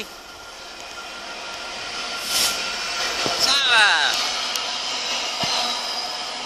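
GBRF Class 66 diesel-electric locomotive, with its EMD two-stroke diesel engine, passing through the station at the head of a freight train. The sound of the engine and the wheels on the rails grows steadily louder over the first few seconds. About three and a half seconds in, as it goes by, a whooshing sweep falls in pitch, and the sound then stays loud.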